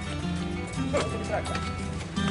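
Background music with held, steady notes over horses' hooves clip-clopping, with a sharp knock about a second in.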